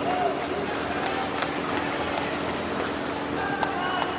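Steady hubbub of a swim-meet crowd: spectators and teammates shouting and cheering over the splashing of swimmers, with a few short shouts standing out.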